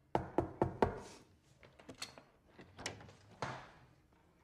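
Four quick, sharp knocks on a door in the first second, followed by a few softer thuds and rustling.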